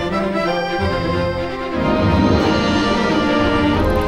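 Instrumental theme music from the ride's soundtrack, with sustained tones, getting louder about two seconds in.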